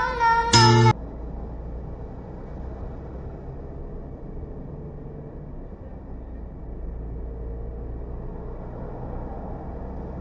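Music stops abruptly about a second in, its last notes bending in pitch; then the steady, low rumble of a car driving on a highway, picked up by the dashcam's own microphone.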